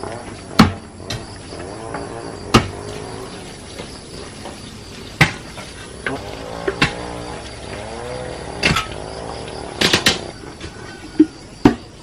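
A series of sharp knocks, about seven at uneven intervals, over faint music or singing in the background.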